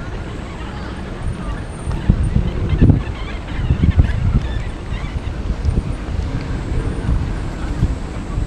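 Outdoor city ambience with irregular low rumbling gusts, like wind buffeting the microphone, over a faint background of distant traffic and scattered small sounds.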